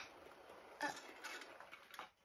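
A model train running faintly along its track, with a few light clicks.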